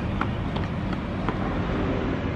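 Steady outdoor town-street background noise with a low, traffic-like rumble, and a few faint clicks.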